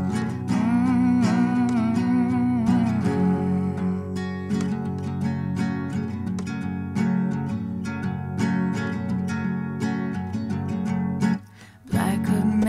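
Nylon-string classical guitar played through an instrumental break, with a wordless hummed melody over it for the first few seconds. The guitar breaks off briefly just before the end.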